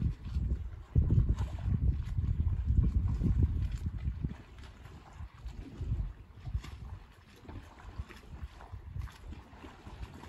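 Wind buffeting the microphone in uneven gusts. It is strongest in the first few seconds, then eases to a lower, choppier rumble.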